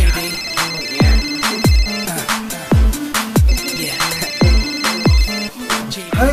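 An iPhone ringing with a trilling electronic ring, two rings of about two seconds each, a second and a half apart. They sound over loud electronic music with deep, falling bass hits.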